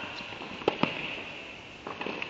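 Two sharp tennis ball impacts in quick succession about a third of the way in, followed by a weaker one near the end. They ring in the reverberant indoor tennis hall.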